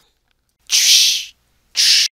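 Two short bursts of hissing noise, a sound effect added to the edited soundtrack: the first lasts about half a second and comes about two-thirds of a second in, and a shorter one follows near the end.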